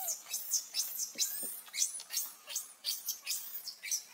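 Newborn macaque squealing in distress: a rapid string of short, very high-pitched cries, about three a second.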